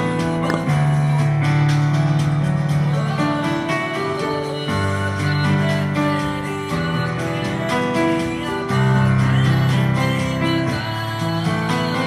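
Yamaha digital piano played with both hands: held bass notes under broken, arpeggiated chords in G major, the chords changing every second or two.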